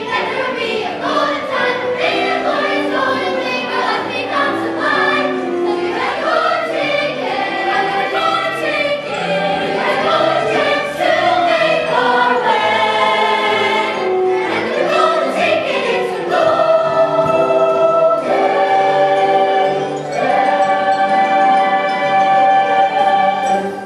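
A large ensemble of young voices singing a musical-theatre number together in chorus, moving into long held notes in the last few seconds.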